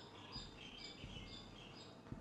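Marker pen writing on a whiteboard, its tip giving a run of faint, short, high squeaks as the letters are drawn.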